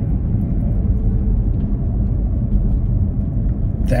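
Steady low road and engine noise inside the cabin of a moving car.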